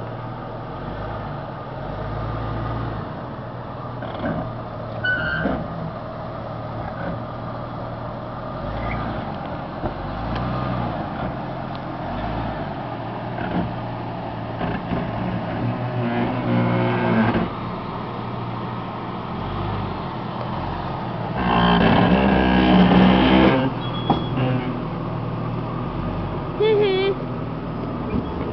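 Jeep Cherokee XJ engine running at low speed as the 4x4 crawls over boulders, with two louder bursts of throttle, the second and longest about three-quarters of the way through.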